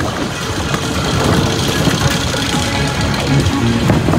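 Roller coaster train running at speed along its steel track: a loud, steady rumble and rattle of the wheels, with music playing over it.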